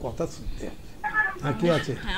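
Speech only: voices talking in a studio, with a higher-pitched stretch of voice about a second in.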